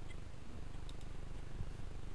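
A steady low hum with a faint haze of background noise.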